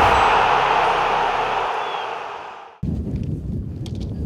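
Static-like hiss from a logo intro's glitch effect, fading out over nearly three seconds. It then cuts suddenly to outdoor ambience with a low rumble.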